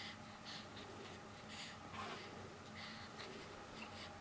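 Faint, soft rustling of a cotton blanket as a newborn shifts and moves his hand under it: several short scratchy brushes at irregular intervals.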